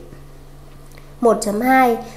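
Speech only: a pause of about a second with a faint steady hum, then a narrator's voice speaking Vietnamese.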